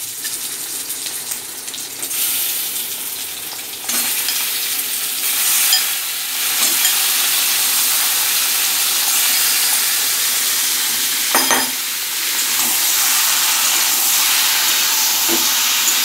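Marinated chicken pieces sizzling in hot mustard oil in a kadhai as they go in one by one on top of the browning onions. The sizzle grows louder about four seconds in and again near seven seconds, with a few knocks against the pan.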